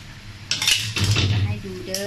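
Metal spatula scraping and clinking against a metal wok as the last cooked shellfish are scooped out into a bowl, a few sharp scrapes about half a second in followed by a longer scrape.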